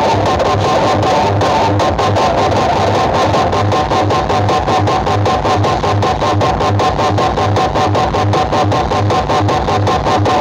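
Loud music with guitar and a steady, evenly repeating bass beat, played through a large outdoor sound-system rig of stacked speaker cabinets.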